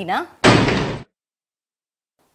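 Rubber-stamp slam sound effect: one sudden, loud thud about half a second in, lasting just over half a second.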